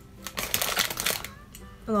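Crinkly rustling of a snack packet as Koala's March biscuits are fished out by hand, a cluster of short crackles during the first second.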